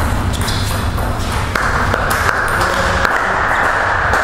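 Table tennis rally: the celluloid ball clicks sharply off the rackets and the table, quick strikes in the first second and a half and only a few after. A steady rushing noise rises from about halfway in.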